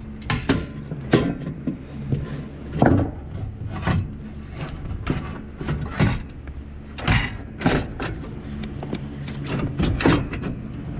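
Steel brake pedal and pedal support being worked into place under a car's dashboard, making irregular knocks and clunks of metal against metal.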